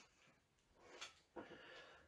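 Near silence, with a faint tap and a brief soft rustle about a second in from a hardback Bible being handled.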